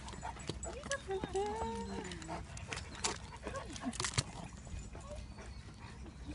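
Dogs meeting, with a brief whine-like call wavering in pitch about a second in, then a few sharp clicks.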